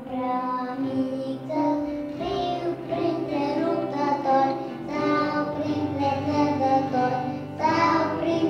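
Children's choir singing a hymn together with adult women's voices, over instrumental accompaniment.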